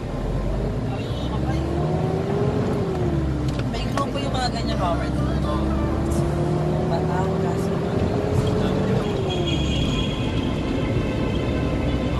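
Motor vehicle engine running on the road, its pitch climbing and then dropping twice as it speeds up and eases off, with voices over it.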